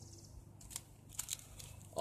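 Stiff plastic-and-card retail packets of fly-fishing leaders being shuffled in the hands, giving a few faint, short clicks and rustles.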